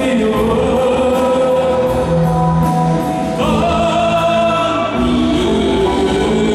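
Live rock band playing loudly through a PA: electric guitars, bass and a drum kit with regular cymbal strokes, under long held sung notes.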